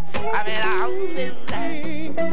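Male singer's voice sliding through a high, drawn-out note about half a second in, over a live rocksteady band with bass and drum hits.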